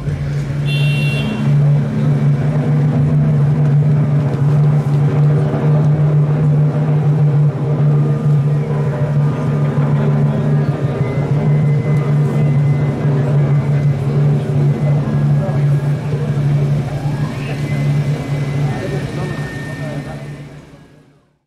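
An engine running steadily at a constant speed, a loud low hum that never changes pitch, with voices mixed in. A brief high-pitched tone sounds about a second in.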